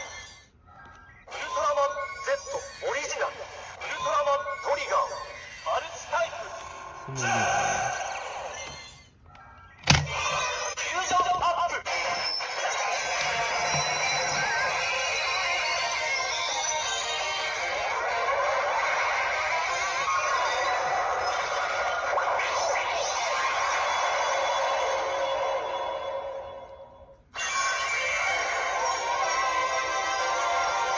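Bandai CSM Orb Ring toy playing its electronic sound effects: recorded voice lines for the first several seconds, a sharp click about ten seconds in, then a long stretch of transformation music. The music cuts out briefly near the end and starts again.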